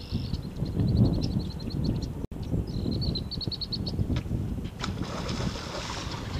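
Wind rumbling on the microphone, with a small bird trilling twice in the background: a quick run of high notes at one steady pitch near the start and again about three seconds in.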